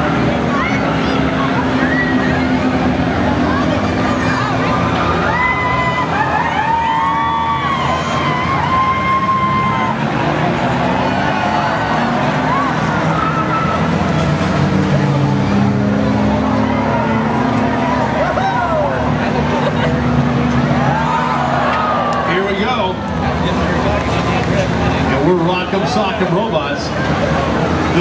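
Several small front-wheel-drive race cars running around a track, engines revving, their rear skid plates scraping along the asphalt, over constant crowd voices and shouts.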